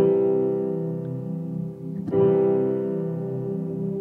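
Two sustained chords from the Sunday Keys software instrument, played on a Studiologic SL88 MIDI keyboard: the SK Grand V2 grand piano with a pad layered in. The first chord fades over about two seconds, and the second is struck about halfway through and fades in turn.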